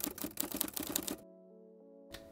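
A typewriter-style sound effect: a quick run of key clicks that stops about a second and a quarter in. Faint sustained musical tones follow.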